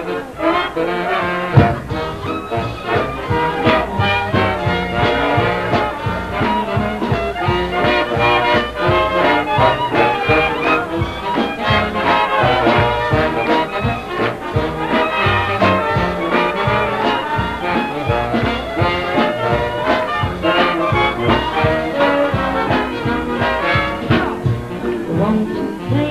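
Big band playing an instrumental swing number.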